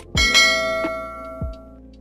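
A bell chime sound effect struck once just after the start, ringing and fading away over about a second and a half, over background music with a steady beat.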